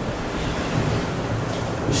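Steady hiss of background room noise, even and unchanging.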